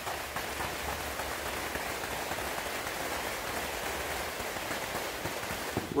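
Heavy battle ropes swung in an hourglass pattern, sliding and slapping across artificial turf: a steady, dense rustling hiss.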